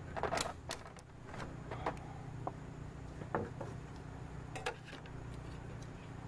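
A few short, scattered scrapes and clicks from hands working at a window pane, over a low steady hum.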